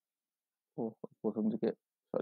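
Speech: a voice saying a few short words, starting about three quarters of a second in after silence.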